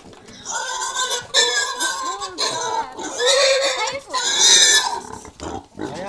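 A pig squealing loudly in a series of about five long, high-pitched cries as it is being caught and held by hand.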